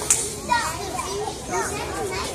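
Many young children chattering and calling out at once, several voices overlapping, with a sharp click just after the start.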